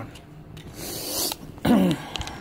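A foil-lined plastic treat packet crinkles for a moment about halfway through. Just before the end comes a short voice sound that falls in pitch.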